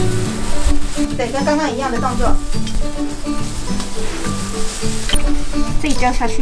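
Hands in crinkly plastic gloves rustling and squishing through steamed glutinous rice in a bamboo basket as it is mixed for rice wine, under background music. A voice is heard briefly about a second in.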